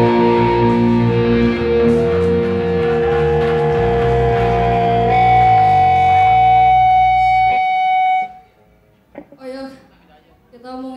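Hardcore punk band playing live: distorted electric guitars, bass and drums hold a ringing chord with a sustained high guitar note over it. The low end drops out and everything cuts off abruptly about eight seconds in. A voice is heard briefly near the end.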